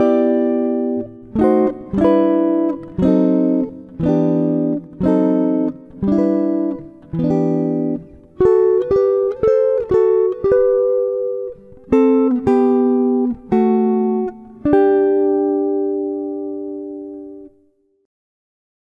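Guitar playing a slow chord-melody arrangement one plucked chord at a time, each left to ring and fade. The first bars are fuller block chords harmonized with sixth and diminished chords. From about halfway the melody is carried in two-note intervals of thirds and sixths, and it ends on a long ringing chord that dies away near the end.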